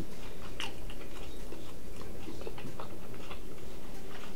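Close-up chewing of a mouthful of steak with the mouth closed: soft, scattered wet mouth clicks over a steady hiss.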